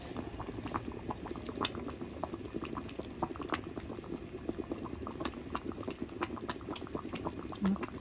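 Pork belly and greens soup boiling in an electric hot pot: a steady bubbling with many small pops. A brief voice comes in near the end.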